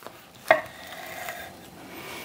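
A large knife slicing lengthways through a smoked sausage's casing on a wooden cutting board. A sharp knock comes about half a second in, with a short faint ring after it, then soft rasping strokes of the blade.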